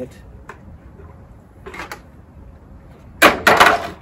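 A plastic bucket is handled and set down on a plastic folding table. Faint clicks and rustles lead to a loud clatter of several knocks lasting most of a second near the end.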